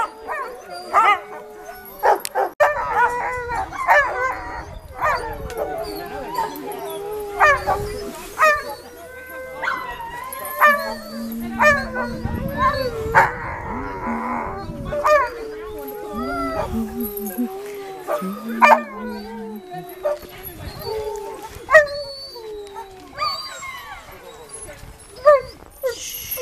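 Several Alaskan Malamute sled dogs howling and barking together: a long wavering howl held under repeated short barks and yips.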